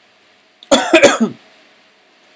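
A person coughing loudly, three quick coughs in a row lasting about half a second.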